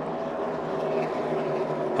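A pack of NASCAR Cup stock cars running at speed side by side, their V8 engines a steady drone.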